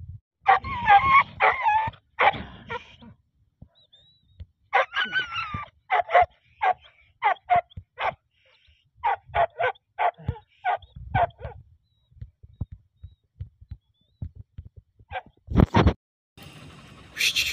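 A leashed hunting dog whining and yelping, then giving a run of short barks, about two to three a second.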